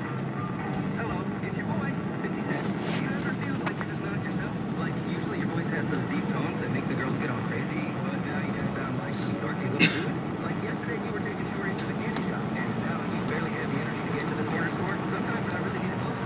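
Steady road and engine noise inside a moving car's cabin, with faint indistinct talk underneath and a single sharp click a little under ten seconds in.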